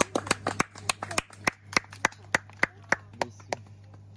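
A few people clapping by hand, the separate claps coming about six a second and stopping about three and a half seconds in.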